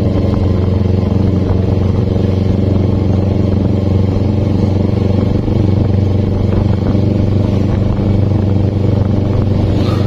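Carbureted Kawasaki Ninja 250 parallel-twin engine running at a steady cruise, its engine note holding one even pitch with no revving or gear changes.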